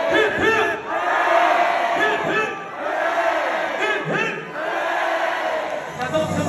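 A concert crowd shouting together, many voices at once and no music playing.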